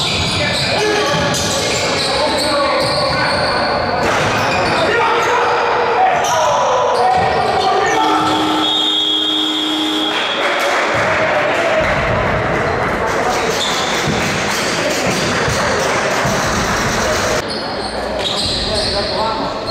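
Live basketball game in a gym: the ball bouncing on the hardwood court, players and bench calling out, all echoing in the hall. A referee's whistle sounds about eight seconds in.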